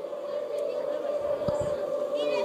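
Quiet background of a small football ground heard through the commentary microphone: a steady hum with faint distant voices, and a soft thump about one and a half seconds in.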